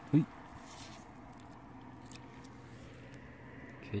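A short vocal exclamation with a rising pitch just after the start. Then only faint background with a light, steady low hum, and another brief voice sound right at the end.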